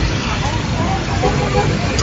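Several people's raised voices in a street scuffle, over the steady low rumble of a vehicle engine running.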